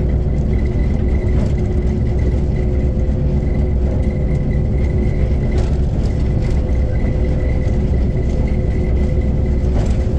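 Heritage train running along the line, heard from on board: a steady heavy rumble with a faint steady whine, and a few short clicks from the wheels on the track.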